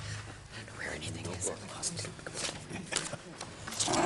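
Faint, indistinct murmuring and whispering in a meeting room, with scattered rustles and clicks of handling, over a steady low electrical hum from the sound system.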